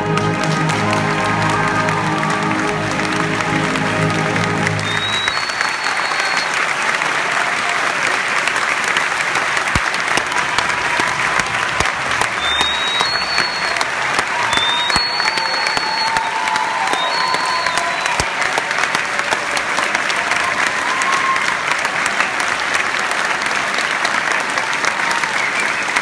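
A concert band's wind and brass hold a final chord that is released about five seconds in. The audience applauds steadily throughout, with a few short rising whistles and cheers.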